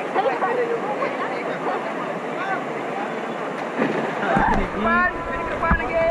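Steady rush of river water with people talking faintly in the background. About four seconds in, low buffeting hits the microphone, followed by a short knock.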